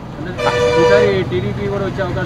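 A vehicle horn honks once at a steady pitch, starting about half a second in and lasting just under a second.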